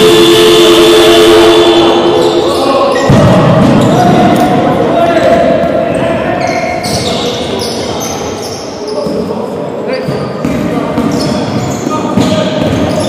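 Live basketball game in an echoing sports hall: a ball bouncing on the wooden court, with voices calling out. A steady held tone sounds for about the first three seconds, and many short knocks and high squeaks follow.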